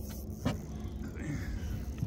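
Steady low rumble of wind across the microphone on open water, with one sharp click about a quarter of the way in.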